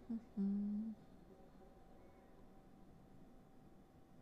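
A woman humming two short held notes, the second lower and louder, ending about a second in.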